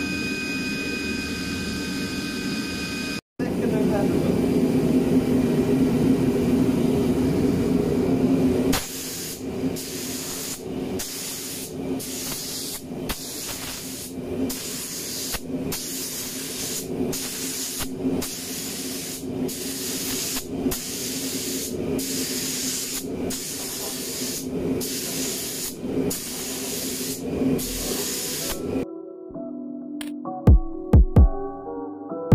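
A cordless drill with a paddle runs steadily, stirring paint in a cup, until a cut about three seconds in. Then a compressed-air spray gun hisses, first in one longer stretch, then in short regular bursts about one a second as paint is sprayed onto the car body shell, over a steady lower hum.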